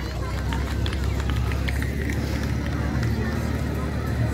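Portable fire pump's engine running at a low, steady idle, with people's voices around it.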